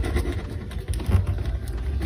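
A gel pen writing on lined notebook paper: irregular small scratches and taps of the pen strokes over a steady low rumble.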